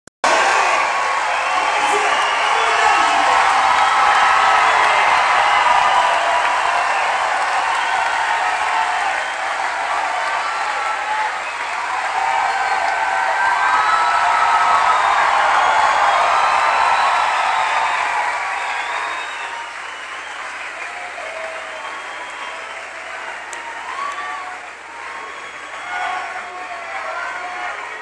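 Large concert crowd giving a standing ovation, applauding and cheering; the applause dies down about two-thirds of the way through.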